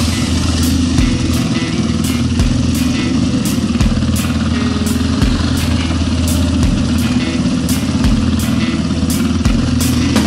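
Dirt bike engine running steadily on a trail ride, with background music with a steady beat mixed over it.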